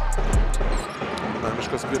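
A basketball being dribbled on a hardwood court, with background music that drops away about a second in.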